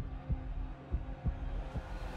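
Cinematic soundtrack: a heartbeat-like pulse of low thumps, a few a second, over a sustained low drone.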